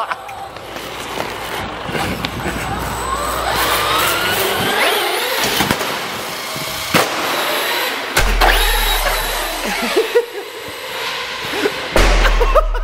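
Traxxas Hoss RC monster truck's electric motor whining and rising in pitch as it accelerates over concrete, with three sharp knocks about six, seven and eight seconds in as the truck bashes against the ramps and wall.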